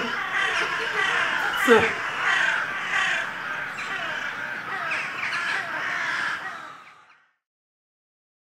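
A dense chorus of many birds calling at once, cut by a man's short shouts at the start and about two seconds in; the calling fades out about a second before the end.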